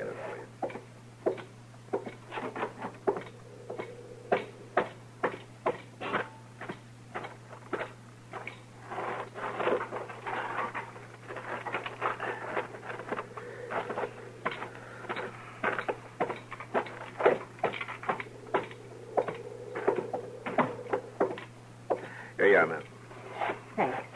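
Radio-drama sound effects of a man fetching firewood: a run of footsteps and wooden knocks and clatters, about two or three a second, with a steady low hum of the old recording beneath.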